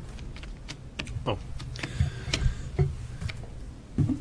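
Scattered light clicks and taps, like keys on a keyboard, with a brief spoken "oh" about a second in.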